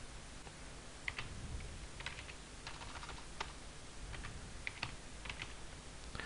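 Computer keyboard being typed on: about ten faint, light keystrokes in small irregular clusters as a short word is entered.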